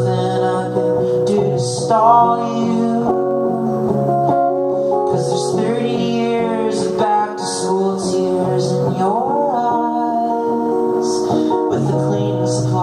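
Live solo song: a strummed acoustic guitar with a man singing over it.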